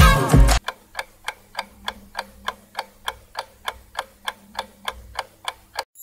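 A music excerpt cuts off about half a second in. Then a clock ticks evenly, about three ticks a second, as a countdown, and stops just before the end.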